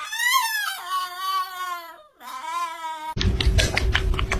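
A small dog, a Chihuahua, howling in a high, wavering, crying-like voice that slides up and down, in two long stretches. About three seconds in, it gives way abruptly to a louder crackle of quick clicks and rustling.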